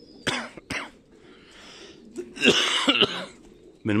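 A person coughing: two short coughs near the start, then a longer, louder cough about two and a half seconds in.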